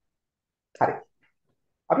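One short cough from a person, about a second in.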